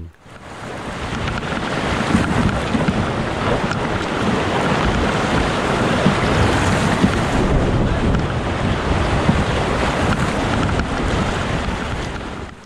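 Whitewater rapids rushing loudly around a canoe as it runs through them, a dense steady roar that builds over the first couple of seconds and then holds.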